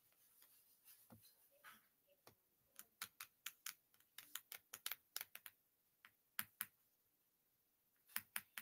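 Faint, irregular sharp clicks and taps, a few close together about three seconds in and a couple more later, over near silence.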